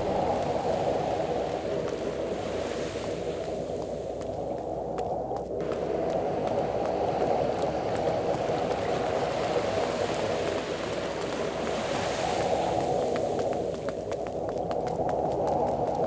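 Sea waves washing on a beach: a steady rushing that swells gently now and then.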